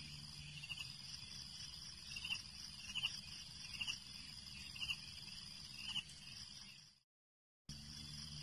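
Steady high-pitched insect chirring, like crickets, with a short sharper chirp about once a second. It cuts out for under a second near the end.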